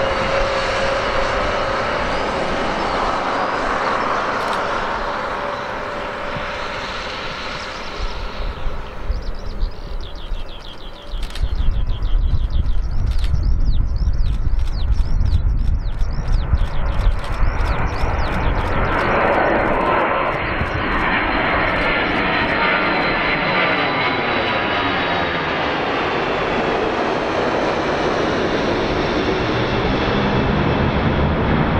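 Boeing KC-135 Stratotanker's four CFM56 turbofan engines at take-off power as the jet rolls, lifts off and climbs out overhead. A steady jet roar turns, a little over a third of the way in, into a much louder, deep rumble with crackle, and a high engine whine runs over it through the later part as the aircraft passes.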